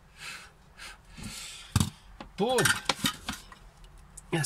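A plastic PCB holder and its clamps being handled, with a sharp click a little under two seconds in. This is followed by about a second of a short wordless vocal sound.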